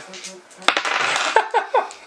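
Dice thrown onto a table, clattering and clinking for about a second, starting just under a second in.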